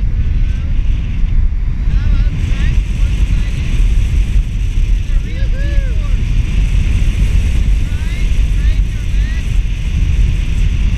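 Wind buffeting the microphone of a camera carried on a paraglider in flight: a loud, steady rumble, with a few faint short chirps now and then.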